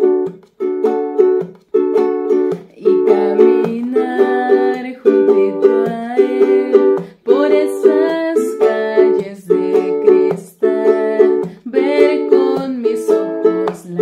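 Acoustic ukulele strummed in a steady repeating pattern, ringing chords with short gaps between the groups of strokes and the chord changing every second or two.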